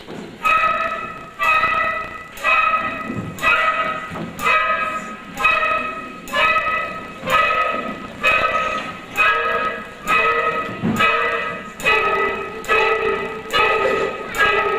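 Middle school concert band playing a horror-film medley: a sharply accented chord struck about once a second, each ringing and fading before the next, like a tolling bell. A lower note joins the repeated chord near the end.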